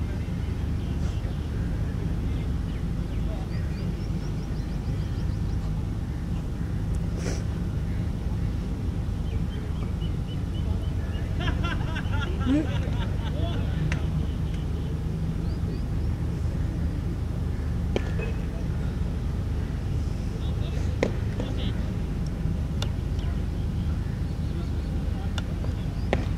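Steady low outdoor rumble with faint voices talking in the background, heard most clearly around the middle, and a few sharp knocks scattered through it.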